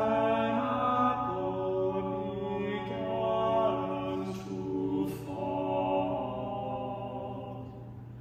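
Three unaccompanied male voices, a tenor and two baritones, singing a trio in close harmony on long held notes that move together. The phrase tails off near the end.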